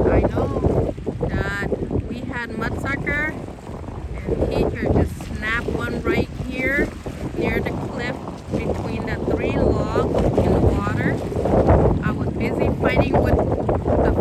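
Wind buffeting the microphone, a heavy, uneven low rumble, with people talking over it on and off.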